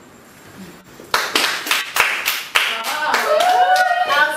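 Hands clapping in a steady rhythm of about three claps a second, starting about a second in, with voices rising into song near the end.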